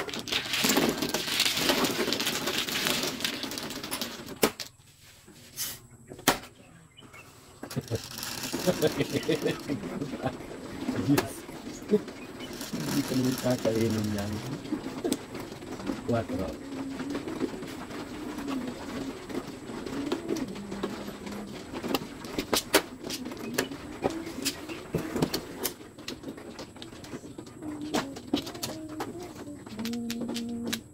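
Plastic mahjong tiles clattering loudly as they are swept into an automatic mahjong table's centre opening, followed by the table's shuffle cycle. Later come scattered sharp clicks of tiles being drawn and set down on the felt.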